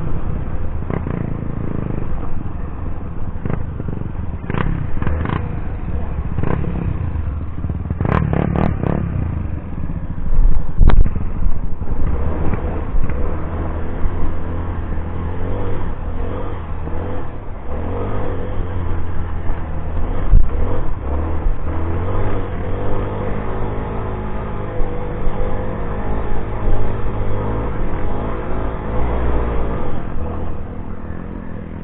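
Off-road motorcycle engine running and revving unevenly on a rocky trail. Clattering knocks come from the bike jolting over stones, with the sharpest knocks around five and eight seconds in.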